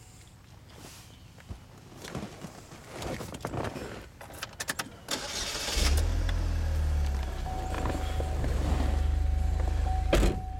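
The turbocharged 2.0-litre Ecotec four-cylinder of a 2008 Pontiac Solstice GXP is cranked and starts about six seconds in, then idles steadily. Soft clicks and rustling come before it, and a thin steady tone sounds over the idle near the end.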